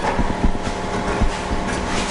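A loosened car rear quarter panel being pulled and flexed by hand, rubbing with a few light knocks, over a steady hum.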